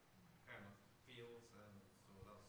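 Faint, distant speech from an audience member asking a question away from the microphone, barely picked up.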